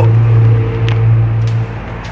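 A steady low mechanical hum with a fainter higher tone above it, dropping away shortly before the end, with a couple of faint clicks.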